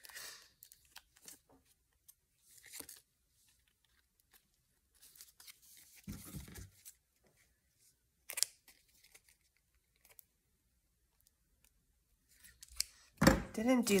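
Large scissors snipping through a small piece of paper: a few separate short cuts with paper rustling between them, the sharpest about eight and a half seconds in.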